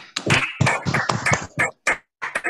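Several people clapping together over a video call, the claps arriving uneven and overlapping through the call's audio, which briefly cuts out near the end.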